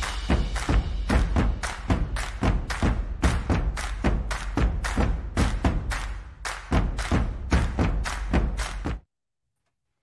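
Show intro music with a fast, driving beat of heavy drum hits, about four a second, over deep bass; it cuts off suddenly about nine seconds in.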